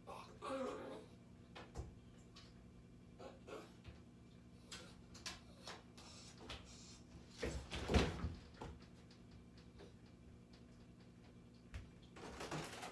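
A puppy in a bathtub with sliding glass shower doors gives a short falling whimper near the start, then scrabbles and knocks against the tub and door as it climbs out, with one loud thud about eight seconds in as it gets over the edge.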